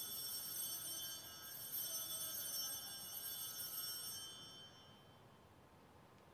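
Altar bells (a cluster of small sanctus bells) rung at the elevation of the host after the words of consecration: a bright jingling ring that starts suddenly, swells a few times as the bells are shaken, and dies away about five seconds in.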